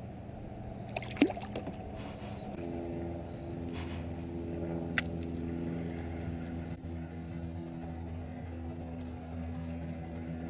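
A single sharp splash about a second in as a small yellow perch is let go into the water by hand, with a lighter click about five seconds in. From a little after two seconds a steady low drone of several held tones runs on underneath.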